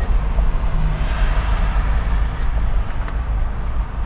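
Steady low rumble of a car's engine and tyres while driving in town.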